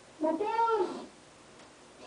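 A young boy's voice calling out one drawn-out, high-pitched phrase into a close microphone; its pitch rises then falls, and it lasts under a second.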